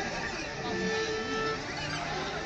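A quartet of cellos playing together, bowed, with one note held for about a second in the middle.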